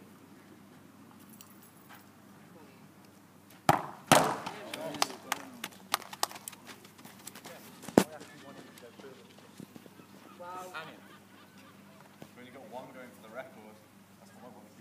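A football struck hard in a penalty kick, a sharp thud followed almost at once by a loud crash of the ball into the goal, with rattling clatter dying away over the next few seconds. A second sharp bang comes about four seconds later, and voices call out near the end.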